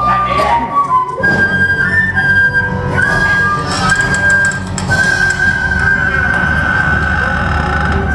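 Instrumental music for a stage musical: a slow melody of long held high notes over a steady low rumble, the last note held for about three seconds near the end.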